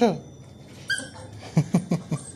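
Beagle puppy whimpering: a brief high-pitched whine about a second in, then a few short yips near the end.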